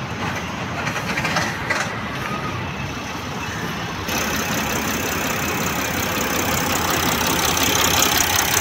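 Mercedes GL 350 CDI's V6 diesel engine idling steadily, heard louder and closer from about four seconds in.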